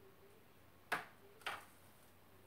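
Two sharp taps about half a second apart, the first louder, each dying away quickly.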